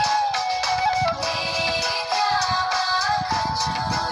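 Background music: a song whose melody line holds long notes that slide in pitch, over a rhythmic beat.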